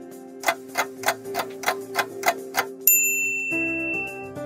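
Cartoon sound effect of a clock ticking, about eight even ticks at roughly three a second, then a bright ding about three seconds in, over steady background music. The ticking stands for the wait while the thermometer takes a reading, and the ding marks the reading being done.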